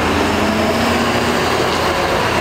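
A train passing on the elevated tracks overhead, a loud, steady rushing rumble, with street traffic passing below.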